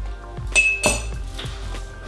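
Two light glassy clinks, about half a second and just under a second in, each with a brief ringing tone: small glass bottles knocking together on the counter as one is picked up. Soft background music runs underneath.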